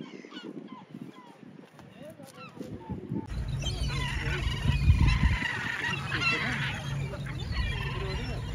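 A flock of gulls calling over water: scattered calls at first, then many overlapping calls from about three seconds in, over a low rumble.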